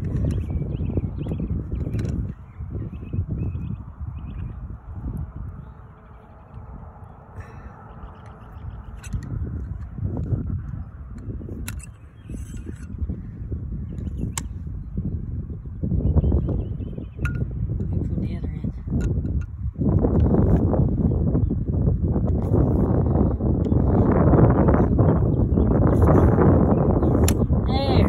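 Wind buffeting the microphone in gusts: a low, uneven rumble that eases off early on and grows much louder over the last third, with a few faint clicks.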